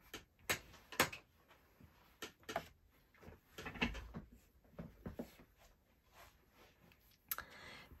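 Light taps and clacks of craft supplies, such as plastic ink-pad cases and acrylic blocks, being picked up and set down on a desk. The taps come at an uneven pace, with a soft rustle shortly before the end.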